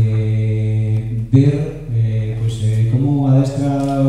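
A man's voice amplified through a handheld microphone, drawing out long hesitating "eeh" sounds at a steady low pitch, a few in a row with brief breaks between them.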